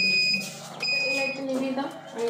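Electronic alarm beeping: a high, steady beep about half a second long, repeating about once a second, twice in these two seconds.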